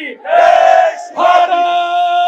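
Slogan call-and-response at a political rally: a man shouts a slogan over a loudspeaker in long, drawn-out, steady-pitched cries, and a large crowd shouts back.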